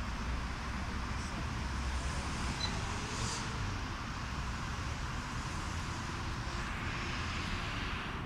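Steady hum and hiss of distant road traffic.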